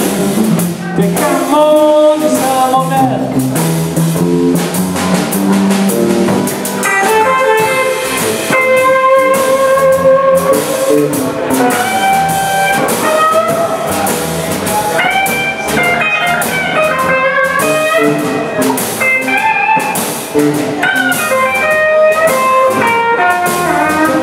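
Live blues band of electric guitar, electric bass and drum kit playing. About seven seconds in, a lead electric guitar solo of high, bending single notes takes over.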